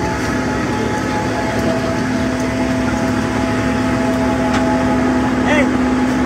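Heavy truck's diesel engine idling close by, a constant steady hum, under a crowd's talk.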